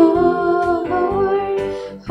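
Female voices singing a worship chorus over electronic keyboard accompaniment, holding long notes with a slide in pitch about a second in, then briefly dropping away near the end.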